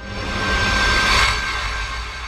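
Logo sting sound effect: a whooshing swell that builds for about a second and then fades, with a steady high tone ringing through it and a low rumble underneath.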